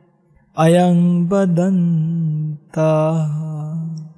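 Buddhist monk chanting in Pali, held mostly on one low pitch: two long drawn-out phrases with a brief breath between, starting about half a second in.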